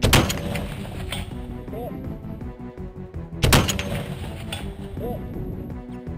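Two shots from a .50 calibre rifle, about three and a half seconds apart, each a sharp crack with a long echo trailing after it.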